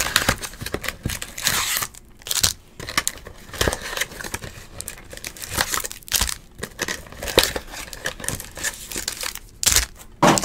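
Foil-wrapped 2018 Topps Museum Collection baseball card packs crinkling and cardboard boxes rustling as the packs are pulled from the opened boxes and set down, in short irregular bursts.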